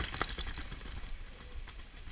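Downhill mountain bike clattering over a rock garden: tyres knocking on rock and the bike rattling, a run of sharp knocks thickest in the first half-second.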